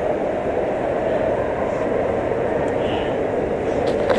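Escalator running, a steady low rumble mixed with the hum of a busy indoor space. A brief knock comes near the end.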